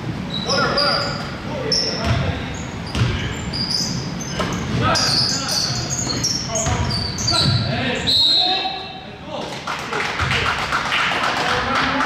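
Basketball being dribbled on a hardwood gym floor, with repeated bounces, sneakers squeaking in short high chirps, and players' voices calling out, all echoing in a large hall.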